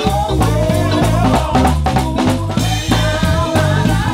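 Gospel song accompaniment with a steady drum-kit beat, a stepping bass line and keyboard, with a wordless sung melody line wavering over it.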